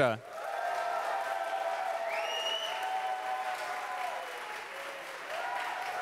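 Audience applauding, easing off about four seconds in and picking up again near the end.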